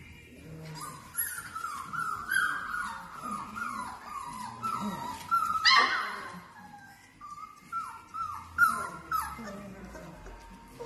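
Bernese Mountain Dog puppies yipping and whining as they play-fight, a string of short high calls that each drop in pitch, with one louder, sharper yelp about six seconds in and another burst of yips near the end.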